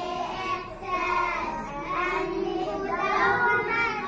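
A group of young children singing an Arabic school song (nasheed) about the five senses together.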